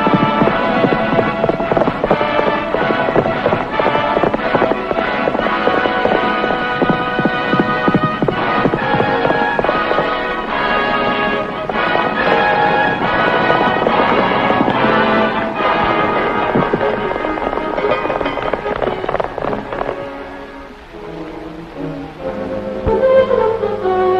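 Orchestral film score with galloping horses' hoofbeats under it. About twenty seconds in, the music drops back, then a new phrase with held notes and a falling line begins near the end.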